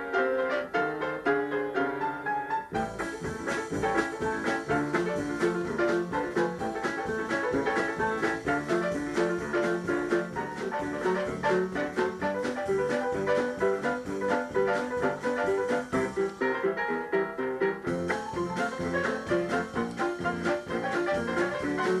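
Solo upright piano playing a jazz improvisation in a busy, steady stream of notes, with a fuller bass line coming in about three seconds in.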